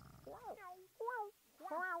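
A cat meowing three times, each a short, quiet meow that rises and falls in pitch.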